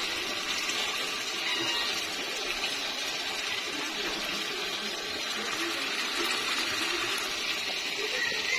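Steady hiss of a lidded stainless-steel pot of soup broth heating on the stove.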